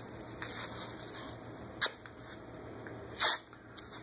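White athletic tape being pulled off the roll and torn by hand while it is wrapped round an ankle: a sharp short rip just under two seconds in, then a longer rasping rip a little after three seconds, with soft handling rustle between.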